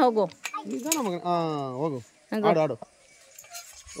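Voices calling out in long, sliding, sing-song tones rather than words, with a few light metallic clinks.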